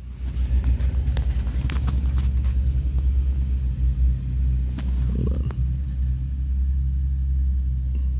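Ford Focus ST's engine idling, a steady low rumble heard inside the car, with a few faint clicks.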